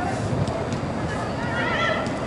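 A high-pitched shouted call that rises and falls near the end, ringing in a large reverberant indoor football hall over its steady background noise, with a couple of faint knocks about half a second in.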